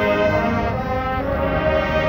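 Marching band brass, trumpets, mellophones and sousaphones, playing loud held chords, moving to a new chord about a second in.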